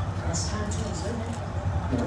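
Close-up wet chewing and mouth sounds of someone eating corn on the cob, in short hissy bursts, over indistinct background voices and a steady low hum.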